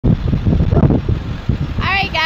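Wind buffeting the microphone outdoors: a loud, uneven low rumble.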